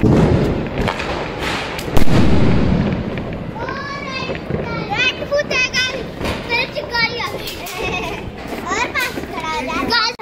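An aerial firework goes off with a loud bang about two seconds in, followed by children shouting and squealing excitedly.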